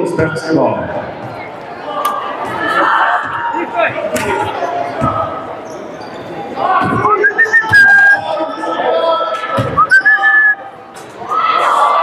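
Basketball being dribbled on a hardwood gym floor amid players' sneakers and spectators' voices, with short high sneaker squeaks about seven and ten seconds in.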